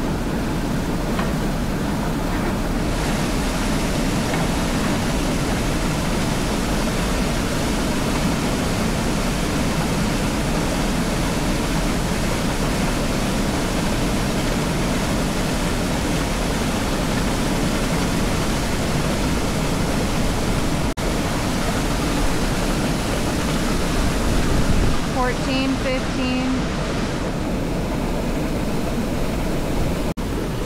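Steady rush of whitewater pouring over a spillway, loud and unchanging. A brief voice sound comes in near the end.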